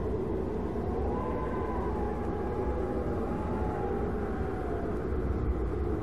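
A steady low rumble with a faint wavering whine that glides slowly up and down above it, an eerie ambient drone.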